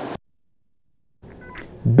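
Speech cuts off abruptly, leaving about a second of dead silence, then faint studio room tone with a few brief faint tones, and a man's voice begins right at the end.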